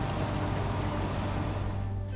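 Outdoor background noise with a steady low rumble, with faint background music underneath. Near the end the noise cuts away and the music is left clearer.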